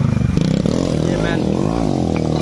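A vehicle engine running steadily, then revving, its pitch rising and falling several times from about half a second in.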